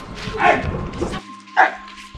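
Two short yelping cries, about half a second in and again near the end, over background music with a steady held tone.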